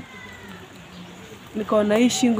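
A short pause in a woman's speech, with a faint high tone falling slightly in the background just after the start; her voice comes back near the end.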